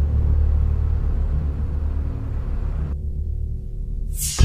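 A steady low rumbling drone from the documentary's closing score, with the higher sounds dropping away about three seconds in as it fades down.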